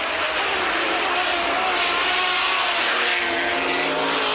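Supercar engines running at racing speed: a steady, dense engine drone with road noise.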